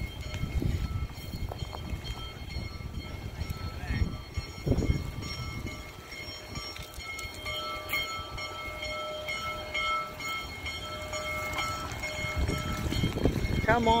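Union Pacific Big Boy No. 4014, a 4-8-8-4 articulated steam locomotive, approaching in the distance, heard through irregular low rumbling.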